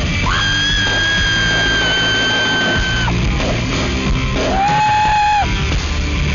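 Live rock band playing, with a female lead singer holding a long, very high screamed note for about three seconds, then a shorter, lower held note near the end.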